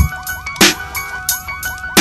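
Hip-hop beat with heavy kick and snare hits under a high, siren-like synth line of short repeated pitch glides, with no vocals.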